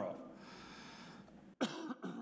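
A man's word ends, then a stretch of quiet room tone, then a single short cough about a second and a half in.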